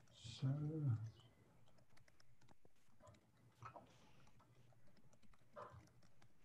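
A single spoken word, then faint, scattered computer-keyboard taps and clicks over a quiet room, as on a video call while someone works the computer.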